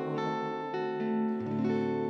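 Live worship-song accompaniment between sung lines: sustained instrumental chords, with a strummed guitar, changing every half second or so.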